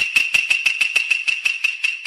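Logo sting sound effect: a steady high ringing tone over a rapid run of sharp clicks, about six or seven a second and quickening slightly.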